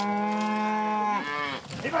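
A cow lets out one long moo that holds a steady pitch, then drops and trails off about a second and a half in.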